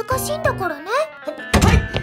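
A character's voice speaking in Japanese over light background music, then a loud thump about one and a half seconds in.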